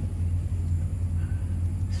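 Air conditioner running: a steady low hum, even throughout.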